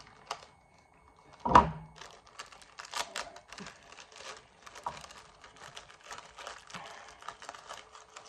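A single loud thump about a second and a half in, then a plastic snack packet crinkling and crackling as it is handled and opened.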